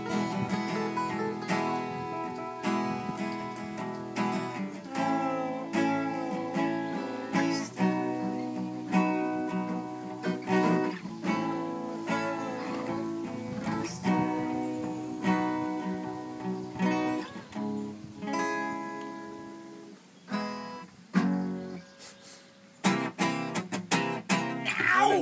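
Acoustic guitar strummed in chords, a steady rhythm of strokes that thins to a few sparse strums near the end.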